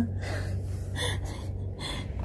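A woman's quiet, breathy laughter: three short gasping breaths over a steady low hum.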